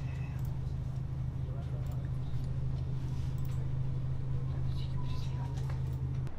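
A steady low hum, with a few faint clicks and indistinct voices over it.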